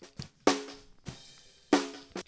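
Soloed snare drum recording from a top and a bottom mic played back with the bottom mic's polarity inverted: a soft ghost stroke, then a strong hit about half a second in and another near the end. With the two mics out of phase, the low end cancels and the snare sounds really thin and weak.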